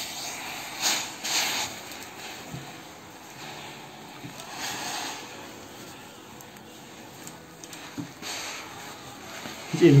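Fakir Verda steam-generator iron pressed and slid over a cotton shirt, giving several short hissing puffs of steam: about one second in, around five seconds and again near eight seconds.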